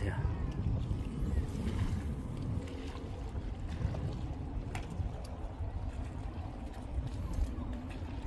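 Wind buffeting the microphone with a steady low rumble, over sea water lapping against the seawall rocks, with a faint click or two.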